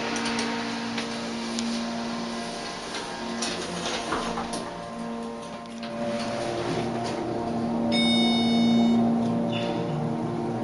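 Montgomery KONE elevator car running, with a steady hum from the drive and a few clicks near the start. A short electronic chime rings about eight seconds in.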